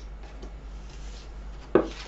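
A deck of round tarot cards handled and shuffled by hand, with a few soft ticks, then one sharp tap about three-quarters of the way in as a card is laid down on the wooden table.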